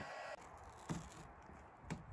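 Two faint sharp clicks about a second apart over low background hiss, as a plastic roof strip is pulled up out of its channel on the car's roof.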